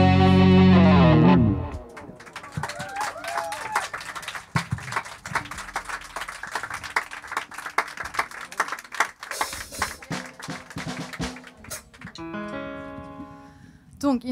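A live pop-rock band with electric guitar ends a song on a held chord that stops about a second and a half in, followed by audience clapping and cheering with a few whistles. Near the end a guitar sounds a few ringing notes.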